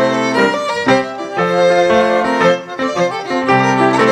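Live folk dance band playing an English country dance tune, a fiddle carrying the melody over piano accompaniment, with chords struck on a steady beat about twice a second.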